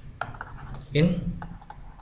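Irregular light clicks and taps of a pen stylus on a writing tablet as handwriting is drawn, over a low steady hum. A man says a single word about a second in.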